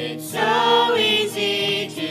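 Several voices singing a gospel song in harmony to acoustic guitar accompaniment; the voices come in about a third of a second in over the guitar.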